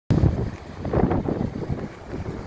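Wind buffeting the microphone in irregular gusts, loudest at the very start, over the wash of ocean surf.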